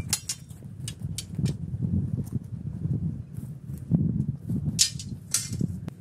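Footsteps crunching through dry grass and twigs close to the microphone, with a low rumble under them and a few sharper snaps near the end.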